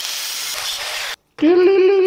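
Angle grinder with a cut-off wheel cutting through thin steel square tube, a steady noise with a high whine that cuts off abruptly about a second in. After a short break, a voice holds one sung note with a slight waver.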